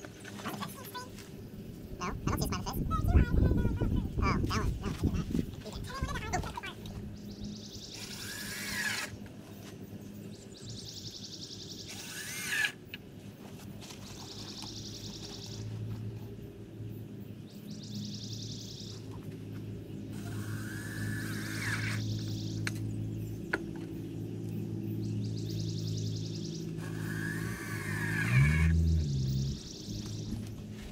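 A cordless drill runs in a burst of a few seconds near the start, the loudest sound here, as it works at a deck ledger board. Background music plays through the rest.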